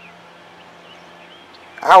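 Quiet outdoor background with a low steady hum and a few faint, distant bird chirps; a man's voice starts near the end.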